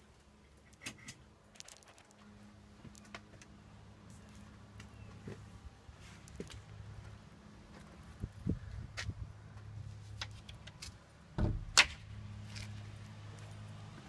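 Footsteps and scattered sharp clicks and knocks, the loudest a knock about twelve seconds in, over a steady low hum that sets in about two seconds in.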